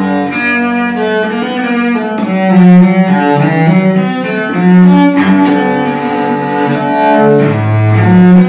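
Solo cello played with the bow: a slow melody of held notes, moving down to a low note near the end.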